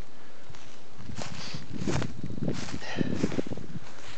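Footsteps crunching through dry fallen leaves on a forest floor, several uneven steps starting about a second in.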